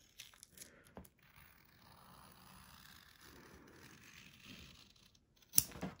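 Scissors cutting through a sheet of vinyl: faint snips and crinkling of the material, with a sharp click about a second in and a louder snip or handling sound just before the end.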